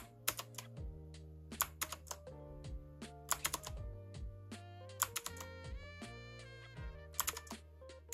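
Clicky blue-switch keys of a Rymek retro typewriter-style mechanical keyboard being pressed in irregular single clicks and short clusters, over soft background music with sustained chords.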